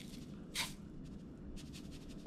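Sea salt shaken from a container onto a metal spoon: a brief, quiet hiss of pouring grains about half a second in, then faint light ticks.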